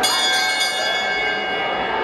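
Hand bell rung trackside in a large indoor athletics hall, a few quick strokes at the start whose tones ring on and slowly fade: the bell signalling the final lap of a middle-distance race.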